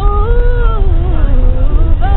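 A single voice sings a high gospel note, holds it, and then slides down through a wavering run of notes, over the steady low rumble of the bus.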